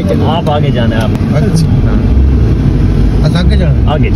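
Men talking inside a car over the cabin's steady low rumble from the engine and road.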